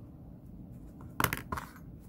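Metal-bladed scissors set down on a plastic cutting mat: a short cluster of sharp clicks a little over a second in, with a softer click just after.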